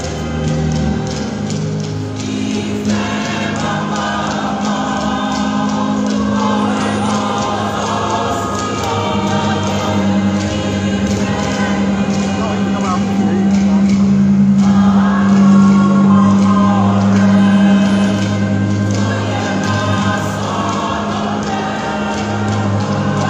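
A church choir singing a hymn in long held notes.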